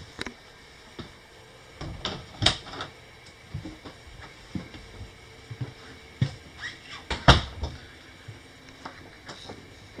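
Irregular footsteps and soft knocks of someone walking through a travel-trailer interior with a handheld camera, with a few sharper knocks, the loudest about two and a half and seven seconds in.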